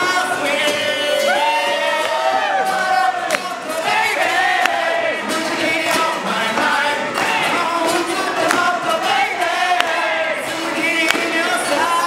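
A man singing a song into a handheld microphone over a live band of acoustic guitar and electric keyboard, with long held notes in the melody and audience noise behind.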